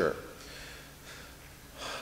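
A pause in a man's speech into a microphone: faint room tone, then a breath drawn in near the end just before he speaks again.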